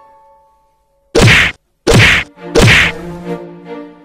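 Three loud punch-impact sound effects in quick succession, about 0.7 s apart, starting about a second in, with a low steady tone lingering after the last.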